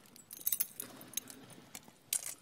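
Thurible chains and lid clinking as the censer is swung to incense the Gospel book: a few bright metallic chinks about half a second apart, in a large reverberant church.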